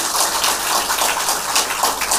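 Audience applauding: many people clapping at once, steady and dense throughout.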